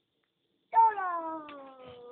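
A single drawn-out cry, about a second and a half long, starting loud and sliding steadily down in pitch as it fades.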